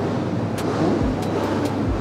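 Steady rushing air noise from a standing electric fan blowing toward the microphone, with a couple of soft low thumps about one and two seconds in.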